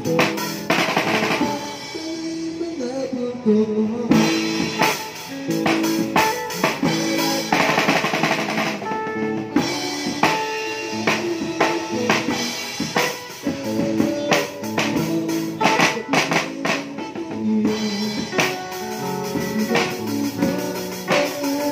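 A child playing a drum kit, with bass drum, snare and cymbals in a steady beat, along with guitar-led music.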